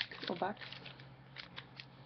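Foil trading-card pack wrapper crinkling in the hands: a scatter of short, light crackles.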